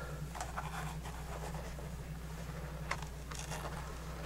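Faint rustling and scratching of bark-tanned deer hide being handled as a leather welt is fitted between two edges, with a small click about three seconds in, over a steady low hum.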